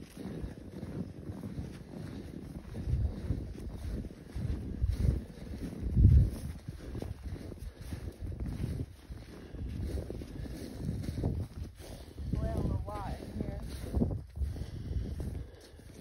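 Wind buffeting the microphone in irregular low gusts, with a loud gust about six seconds in, over the steps of people walking through snow.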